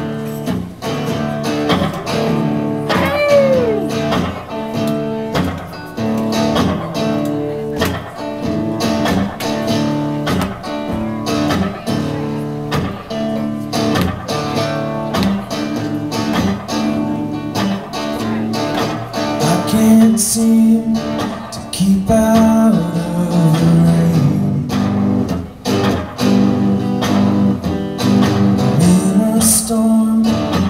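A live folk-rock band plays the opening of a song, with guitars, upright bass and drums, in a steady rhythm.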